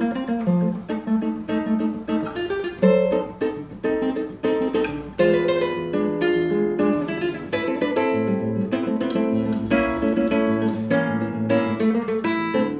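Solo classical guitar with nylon strings, played fingerstyle. A quick, continuous line of plucked melody notes runs over lower bass notes and chords.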